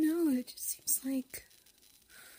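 Speech only: a woman speaking softly, close to the microphone, with short breathy noises between the words.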